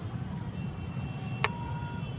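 A steady low rumble with a single sharp click about one and a half seconds in, as a small plastic part of a helmet camera mount is worked by hand.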